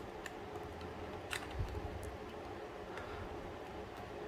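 Faint handling sounds of cardboard model parts being folded and pressed into place by hand: a few light clicks, the clearest about a second and a half in, followed by a soft thump.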